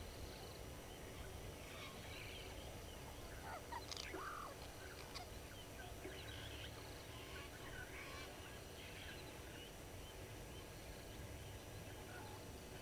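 Several wild birds calling faintly at once, a scattered mix of short calls, with one louder call about four seconds in, over a low steady background rumble.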